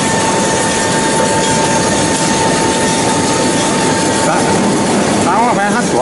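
MG70-8 dough divider rounder machine running, a loud steady mechanical noise with a constant high whine as its rollers turn out dough balls.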